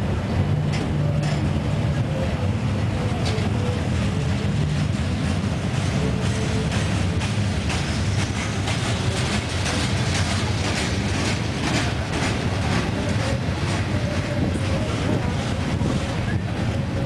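Freight cars rolling past at close range: a steady rumble of steel wheels on rail, with repeated clicks and knocks that get busier in the second half, and a faint wavering squeal.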